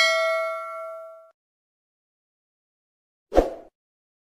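A notification-bell 'ding' sound effect from a subscribe-button animation, a bright chime of several tones that rings and fades out over about a second as the bell icon is clicked. Near the end comes a short, sudden burst of noise as the graphic disappears.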